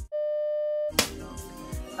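A steady electronic beep tone, held for just under a second with everything else cut out, ending in a click. Lofi background music follows.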